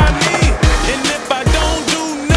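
Hip hop beat with repeated falling bass hits, over which skateboard wheels roll across a hard tennis-court surface.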